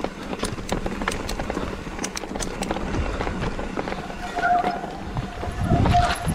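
Mountain bike rolling down a rocky dirt trail: tyres crunching over stones with the chain and frame rattling in quick clicks. A brief high squeal comes in about two-thirds of the way through.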